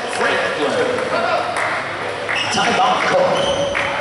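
Basketball game sound in a gym: indistinct shouting and chatter from players and spectators, with short high sneaker squeaks on the hardwood court and a ball bouncing.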